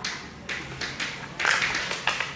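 Chalk tapping and scratching on a chalkboard as words are written, a quick run of short taps and strokes. The busiest and loudest stretch comes about a second and a half in.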